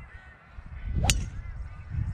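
Golf driver striking a ball off the tee: one sharp crack about a second in, followed by a low rumble.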